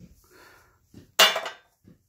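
A few light knocks, then one sharp, bright, rattling clatter about a second in as a homemade test cord and its plug are handled to be plugged in. No motor hum.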